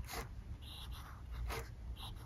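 Medium nib of a Cross Aventura fountain pen scratching faintly on paper in short strokes as cursive letters are written.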